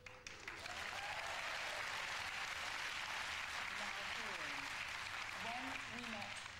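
Audience applause, a dense steady clatter of many hands that starts just after the beginning and eases near the end, with faint voices beneath it.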